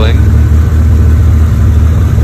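Tomei 2.2-litre stroked SR20DET turbocharged inline-four idling steadily at about 1,170 rpm, a constant low hum.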